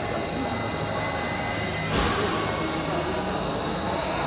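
Steady background ambience of a busy indoor hall, a continuous wash of noise with people about, broken by a single sharp knock about two seconds in.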